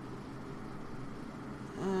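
Steady low background hiss of room tone with no distinct sound. A man's voice starts a drawn-out "uh" near the end.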